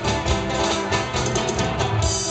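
Live band playing an instrumental passage: fast, rhythmically strummed acoustic guitars over electric bass guitar and keyboard.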